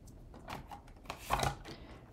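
Faint clicks and rustles of hands handling a roll of Tear & Tape double-sided adhesive and a paper card, with one slightly louder handling noise about a second and a half in.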